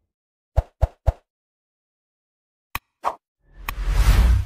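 Sound effects of an animated like-and-subscribe intro: three quick pops in a row about half a second in, then a click and another pop near three seconds, and a whoosh swelling up at the very end.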